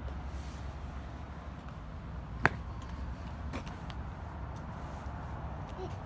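Steady low background rumble, with one sharp click a little before halfway through and a fainter click about a second later.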